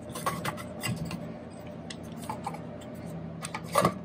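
Plastic drill body sliding and knocking into a perforated sheet-metal case: scattered light clicks and rubs, with a couple of sharper knocks near the end as it seats.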